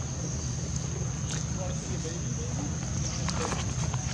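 Outdoor ambience of a steady low hum and a steady high-pitched whine under faint vocal sounds. A few short crackles of dry leaves sound about three seconds in as a macaque walks off across the dirt.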